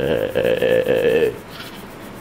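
A man's voice holding one long drawn-out vowel, the stretched-out end of a word, for about a second and a quarter before it stops and the sound drops away.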